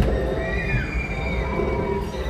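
Ride car running along its track with a steady low rumble, a brief knock at the start, and a high squeal that glides down in pitch about half a second in and then holds.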